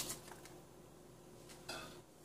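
Faint handling of dried bay leaves being laid onto sliced eggplant in a stainless steel wok: a small click at the start and a soft rustle about three-quarters of the way in, with little else between.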